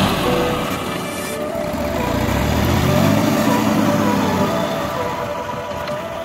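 Massey Ferguson 9500 tractor's diesel engine running under the load of its front loader, its speed rising and then falling again about midway.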